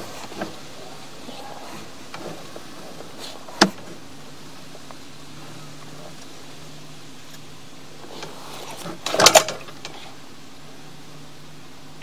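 Sewer camera push cable and reel being worked by hand, with a faint steady hum underneath: a single sharp click about a third of the way in and a short cluster of knocks and scrapes about three quarters of the way through.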